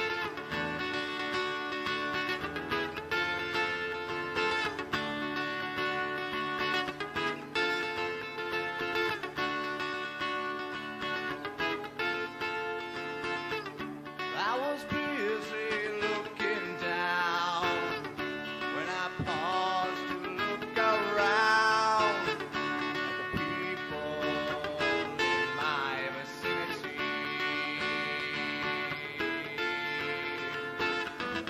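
Rock band playing live: ringing electric guitar chords hold steady, then about halfway through a lead guitar line with bent, wavering notes comes in over them.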